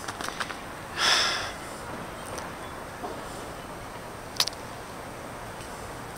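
A short sniff through the nose about a second in, then a single sharp click near the middle, over faint outdoor background noise.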